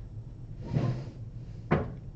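Handling noise at a desk: a brief scraping rustle just under a second in, then a single sharp knock near the end, as of something set down.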